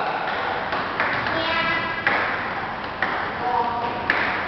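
Table tennis ball being hit back and forth, with short sharp pings off the paddles and table about once a second.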